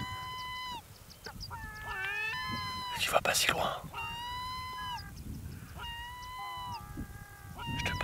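Gulls calling repeatedly, a string of drawn-out, level calls that drop in pitch at the end, several birds overlapping about two seconds in. A short loud crackle cuts across them about three seconds in.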